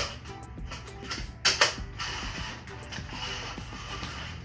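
Clicking and rattling of an Aputure softbox's metal speed ring and collapsible rods being handled and turned, with two louder clacks about a second and a half in.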